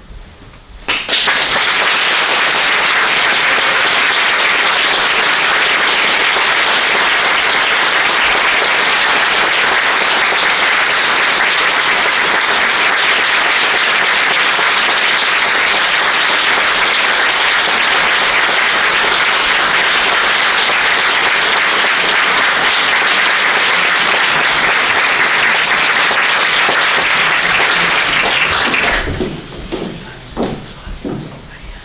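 Audience applauding, a steady, dense clapping that starts about a second in and dies away shortly before the end.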